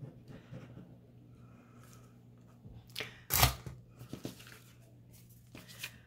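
Paper handling: a glued paper coin envelope being pressed and slid by hand on a hard tabletop, with soft rustles and a short, louder brush of paper about three and a half seconds in.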